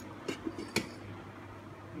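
A few light metallic clinks of cookware, the sharpest about three-quarters of a second in, over a faint steady hum.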